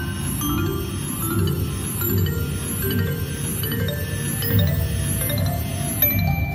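Mayan Magic slot machine playing its win-celebration music, a rhythmic run of jingling tones stepping upward in pitch as the bonus win counts up on the credit meter.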